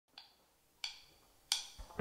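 Three sharp wooden clicks, evenly spaced about two-thirds of a second apart: a drumstick count-in. The band comes in with drums at the very end.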